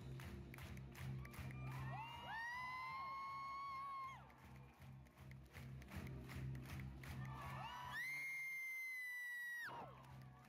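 Theatre audience cheering and screaming over music with a steady beat. Two long high-pitched screams stand out: one about two seconds in, held for about two seconds, and a louder one near the end that cuts off sharply.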